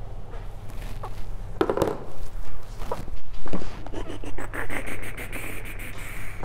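Rustling and scattered knocks of a person getting up from a chair and moving about, then a drawn-out squeak with fine clicking over the last two seconds. A steady low hum runs underneath.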